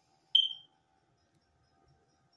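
A single short, high-pitched beep about a third of a second in, dying away quickly.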